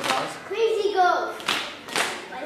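Children's hand claps keeping time in a rhythm game, with a few sharp claps, and one child's voice calling out a word between them.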